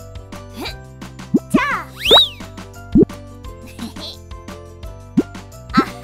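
Light children's background music with cartoon sound effects laid over it: several short rising 'bloop' pops, and a larger high sliding rise about two seconds in.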